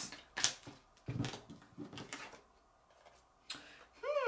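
Tarot cards being shuffled and drawn: soft rustling of the cards with a couple of sharp card snaps, one about half a second in and another near the end.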